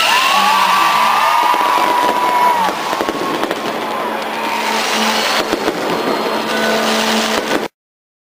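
Fireworks going off overhead: a dense, loud hiss of bursting shells and crackling sparks with sharp pops, ending in a sudden cut-off shortly before the end.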